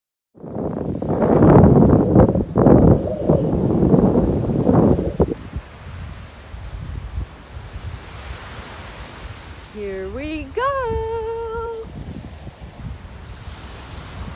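Ocean surf and wind on the microphone, a loud rush for the first five seconds and then a quieter steady wash. About ten seconds in, a voice hums a short note that rises and holds.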